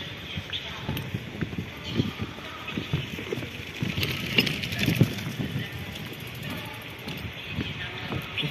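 Footsteps on a temporary walkway of rubbery ground-protection mats, about two steps a second, over a steady outdoor background.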